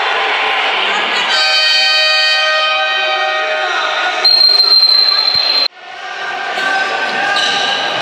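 Echoing sports-hall crowd noise with shouting voices, a held pitched tone lasting about two seconds, then a long, loud referee's whistle blast about four seconds in that cuts off abruptly.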